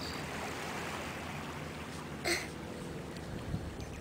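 Steady wind noise on the microphone with a soft shoreline wash, and one brief sharp sound about two seconds in.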